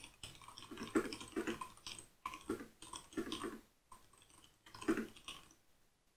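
Typing on a computer keyboard: irregular runs of quick key clicks with short pauses, thinning out near the end.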